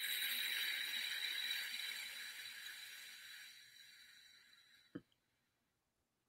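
A woman's long, slow exhale through pursed lips: a breathy whoosh with a faint whistling tone in it that starts loud and fades away over about four seconds, emptying the belly in a diaphragmatic breathing exercise. A short click follows near the end.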